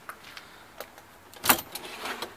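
A few light clicks, then one sharp clack about one and a half seconds in, followed by a few smaller knocks.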